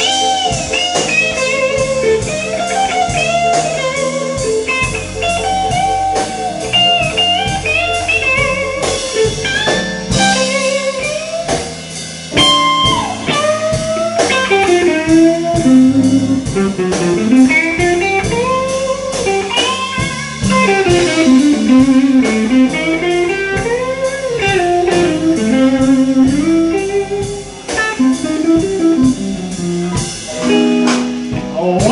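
Live blues electric guitar solo on a semi-hollow-body electric guitar, full of bent notes that glide up and down in pitch, with the band playing behind it. The phrases sweep more widely up and down in the second half.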